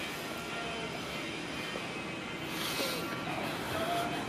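Steady background noise with faint music, and a brief rise of hiss a little past halfway through.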